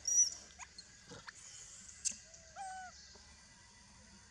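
Long-tailed macaques calling: a short, high squeal just after the start, then a shorter, lower whimpering call a little past halfway.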